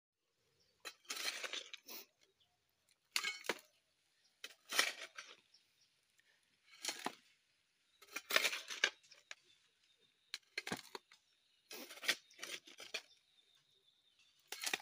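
A dog pulling and tearing at long grass blades with its teeth, in rustling, ripping bursts about every one to two seconds.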